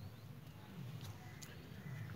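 Quiet room tone with a steady low hum and a few light clicks and taps from handling a small jewellery box.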